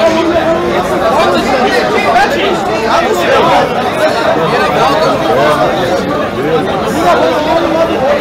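Crowd of spectators chattering, many voices overlapping at a steady level in a large hall.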